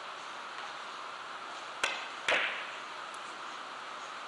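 Three-cushion carom billiards shot: a sharp click as the cue tip strikes the cue ball, then a louder, briefly ringing click about half a second later as the cue ball hits another ball, and a faint tick after that.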